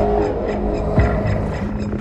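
A loud, low, steady drone with sustained tones under trailer music, and a single sharp hit about a second in.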